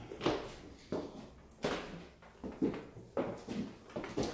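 Footsteps climbing a wooden staircase: a steady series of footfalls on the treads, roughly one every two-thirds of a second.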